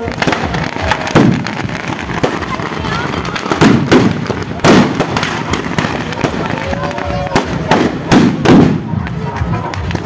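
Firecrackers packed inside burning Ravan effigies going off in a rapid, irregular crackle, with several louder bangs scattered through.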